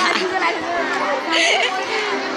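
Chatter of several voices talking at once close by, with a crowd behind.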